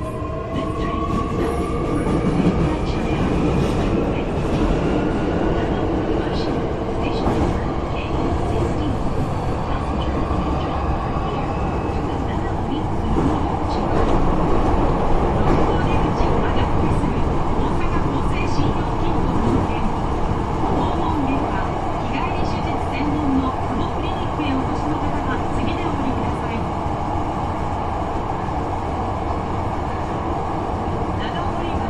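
Electric train accelerating: the traction motors and inverter whine in several rising tones for the first ten seconds or so, then give way to a steady rumble of running and rail noise, heard from inside the car.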